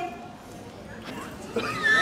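Faint street background, then near the end a short high-pitched squealing cry from a person's voice.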